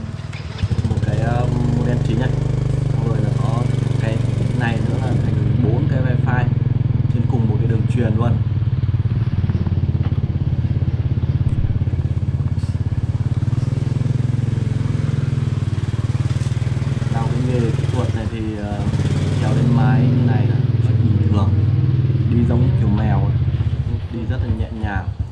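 Motorbike engine running steadily as it is ridden, heard from the rider's seat, with a voice talking over it at times.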